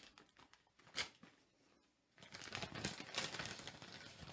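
A snack wrapper crinkling as it is handled and opened: a short sharp crackle about a second in, then a longer stretch of crinkling from a little past halfway.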